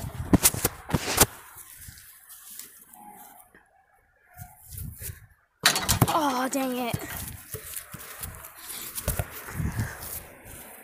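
Sharp knocks and handling noise, then a brief quiet stretch, and about six seconds in a short wordless voice sound whose pitch falls, followed by more scattered knocks.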